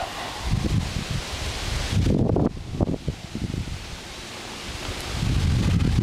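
Wind buffeting the microphone in gusts, a noisy rush with low rumbles that rises and falls, strongest about two seconds in and again near the end.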